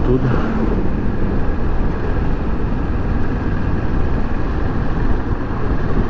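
Kawasaki Versys 650 parallel-twin motorcycle riding at a steady speed, its engine running under a steady rush of wind on the microphone.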